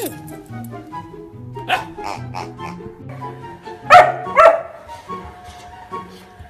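A dog barking in short bursts, a few about two seconds in and two louder barks about four seconds in, over background music.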